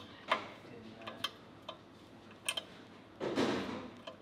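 Würth ZEBRA 14 mm ratcheting open-ended spanner clicking as it is swung back and forth on a bolt head, its jaw letting go and grabbing the flats: four sharp metallic clicks at uneven spacing, roughly one a second, the first the loudest. A brief scuffing noise comes near the end.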